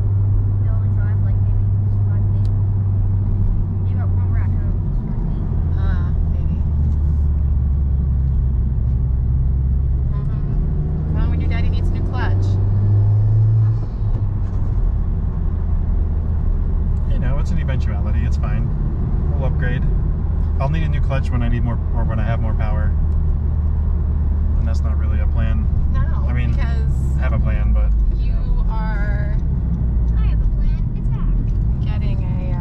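Honda Civic Type R's turbocharged four-cylinder engine running, heard from inside the cabin, a steady low drone under light driving. About ten seconds in it rises in pitch as the car accelerates, then falls abruptly with a brief dip in loudness at a gear change.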